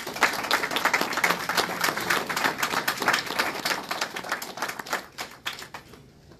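Audience applauding: many people clapping, starting all at once, thinning out after about three seconds and dying away to a few last claps near the end.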